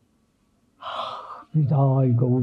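A person draws a short, sharp audible breath after a pause, then starts speaking about a second and a half in.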